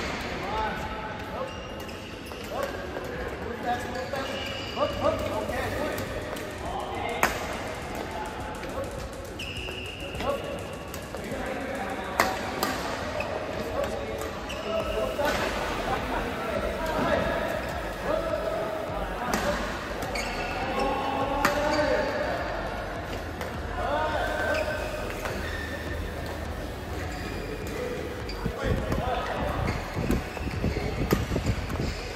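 Badminton rackets striking shuttlecocks, a sharp crack every few seconds, with shoes squeaking on the court floor as players move.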